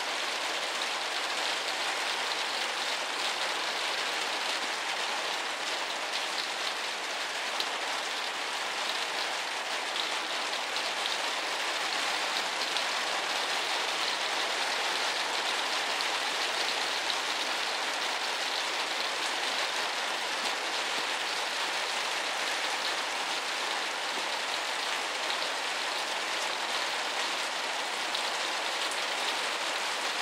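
Steady rain falling on a newly built porch roof, heard from beneath it, as an even patter with no letup.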